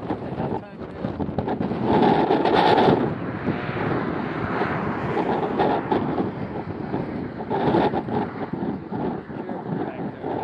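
Wind buffeting the camera microphone: a rough, gusting rush that swells to its loudest about two to three seconds in and then holds at a slightly lower level.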